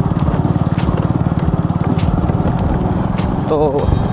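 Engine of the vehicle carrying the camera running steadily along a rough dirt road, a rapid low pulsing, with a few short clicks.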